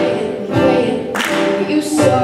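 A young woman singing long held notes while strumming chords on an acoustic guitar.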